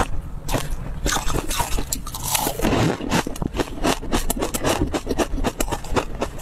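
Close-miked crunching and chewing of a mouthful of crumbly food, a rapid, dense run of crisp crackles with no pause.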